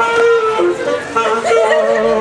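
Saxophone playing a slow melody of held notes that step up and down in pitch.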